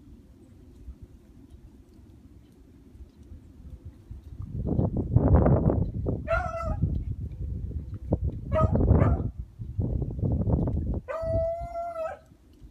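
Rabbit hounds baying on a rabbit's trail: three drawn-out bawls, the last one longest, near the end. Gusts of wind rumble loudly on the microphone through the middle of the clip.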